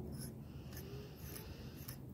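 Faint light scraping and a few small clicks as a small metal clay-sculpting tool is picked up and handled over a wooden work board.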